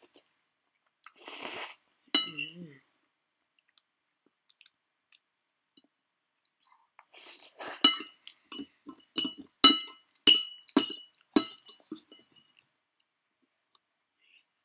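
Metal fork and spoon clinking against a ceramic plate while twirling noodles: a quick run of a dozen or so ringing clinks, starting about seven seconds in and lasting some four seconds. A brief slurp of noodles comes about a second in.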